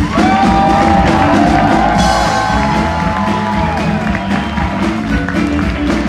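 A live rock band with electric bass and guitar playing a steady vamp. A long held note rings over it for the first three seconds or so.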